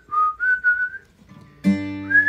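A man whistles a few short notes at about the same pitch, then strums a chord on an acoustic guitar about a second and a half in.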